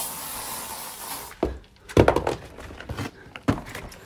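A cardboard box being moved and set down: about a second of scraping rustle, then several dull thumps.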